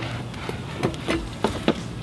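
A few light clicks and knocks from a home-built BMX bike as a rider stands on the pedals and steps off, over a low steady background.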